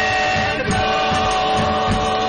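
Music on an AM radio broadcast: long held notes over a steady beat.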